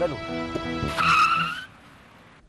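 Car tyres squeal briefly under hard braking about a second in, in a slightly rising high note that lasts about half a second before the sound cuts off abruptly. Dramatic background music plays underneath.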